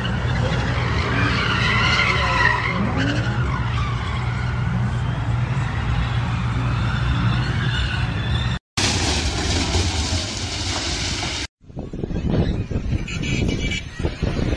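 Cars doing donuts on a blocked highway: engines running and tyres skidding and squealing in a steady din. Near the end a hard cut leads to gusts of wind on the microphone.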